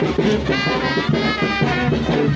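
Band music led by brass, playing a lively tune over a steady beat.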